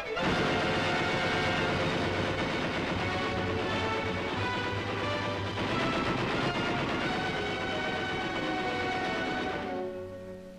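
Loud orchestral cartoon score that starts abruptly and plays densely and continuously, fading out near the end.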